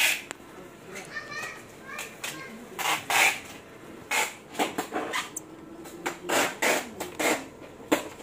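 Indistinct voices talking in the background in short bursts, with a sharp click at the start and another at the end.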